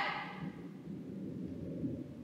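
Low, muffled rumble of water, a water sound effect with no distinct tones, easing slightly in level.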